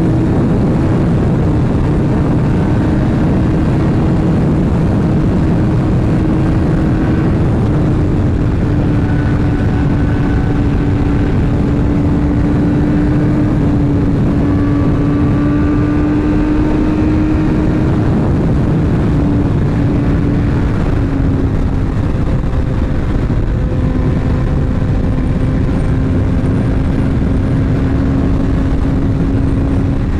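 On-board sound of a BMW S1000R's inline-four engine cruising at a steady highway speed, under heavy wind rush on the microphone. The engine note holds one steady pitch that sags slightly about two-thirds of the way through.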